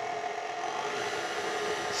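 Electric stand mixer running steadily on a low speed, its beater turning through cream cheese frosting in a steel bowl.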